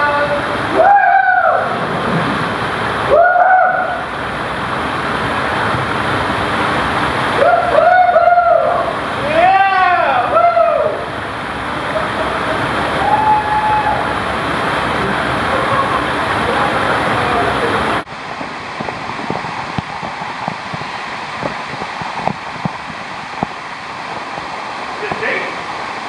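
Rushing water of a canyon creek, with splashing, under several drawn-out, wordless shouts in the first half. About two-thirds of the way through, the sound drops suddenly to a quieter, steady rush of water.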